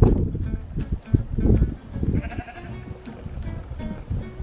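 Katahdin sheep feeding at a wooden trough, with scattered short clicks and knocks and one brief sheep bleat a little over two seconds in. Background music plays underneath.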